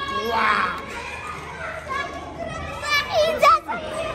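Children's voices in a play area: chatter and calls, with one loud high child's cry sliding up and down about three seconds in.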